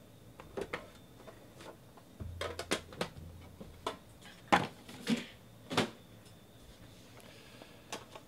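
Trading-card box packaging and a plastic card case being handled on a tabletop: a scatter of light clicks and knocks, the loudest three coming in the second half. There is a low rumble of something sliding between about two and four seconds in.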